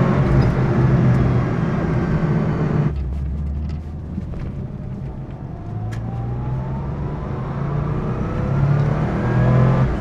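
Porsche 993 GT2's air-cooled twin-turbo flat-six heard from inside its stripped cabin, running steadily under load. The engine note drops away suddenly about three seconds in, then picks up again from about six seconds in, climbing steadily in pitch as the car accelerates.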